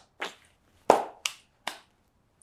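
A man's quiet, breathy chuckle: a few short exhalations through a smile. There is one sharp tap about a second in.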